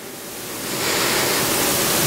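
A long, deep inhale close to a stand microphone, a rushing breath that swells over the first second and holds, as the poet gathers herself before reciting.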